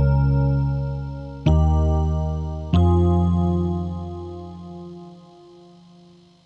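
Electric bass and Concertmate 980 keyboard playing slow intro chords: three chords struck in the first three seconds, each left to ring, the last one held and fading away.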